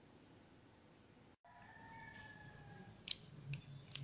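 Faint room tone; about a second and a half in, a faint drawn-out animal call lasting about a second and falling slightly in pitch, then a few light clicks near the end.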